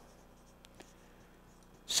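Marker writing on a whiteboard: faint scratching strokes with two light ticks a little under a second in.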